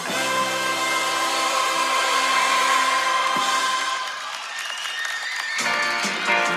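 Recorded pop-rock music playing from a radio broadcast, with dense held chords. The lower notes drop away about four seconds in, and the full band sound comes back just before the end.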